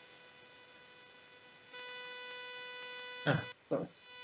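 Steady electrical hum with a stack of high whining overtones on the call's audio line; it becomes noticeably louder a little under halfway through. A short 'ah' from a voice comes near the end.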